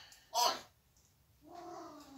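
African grey parrot calling: a loud, short call about half a second in that slides down in pitch, then a longer, lower call that falls away near the end.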